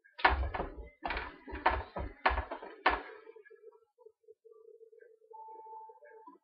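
Five dull thumps, about half a second apart, as marinated chops and a plastic container are handled on a kitchen counter. A faint steady hum follows.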